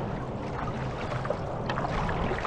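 Water rushing and gurgling along the hull of a stand-up paddleboard as it glides across flat water, with small splashes and a paddle blade dipping in near the end.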